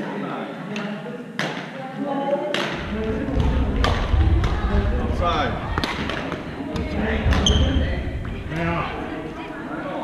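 Badminton play in a reverberant gym hall: sharp racket hits on shuttlecocks and shoe squeaks and footfalls on the wooden floor, from this court and the ones around it, over distant chatter. A low rumble runs through the middle.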